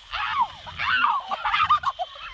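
A woman shrieking with laughter in a run of short, high-pitched rising-and-falling cries.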